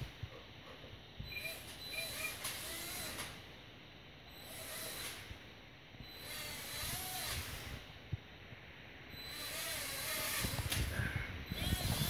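Small toy drone's motors whirring in several short bursts, starting and stopping as it moves about on a wooden floor. Louder rustling builds near the end.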